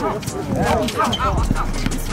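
Players calling and shouting over each other during a scramble under the hoop of an outdoor basketball court, with scattered knocks and footfalls from the play.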